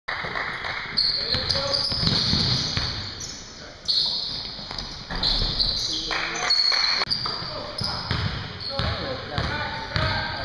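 Basketball game sounds on an indoor hardwood court: a ball bouncing and players' shoes giving short high-pitched squeaks, with voices of players and spectators echoing in the gym.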